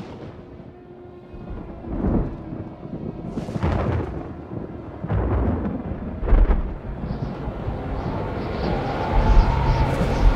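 Thunder: a series of rumbling claps, the loudest about six seconds in, followed by a steadily rising rush of wind and rain near the end.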